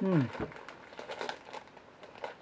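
Plastic pastry wrapper crinkling and rustling in a run of short crackles, after a brief grunt of a voice at the start.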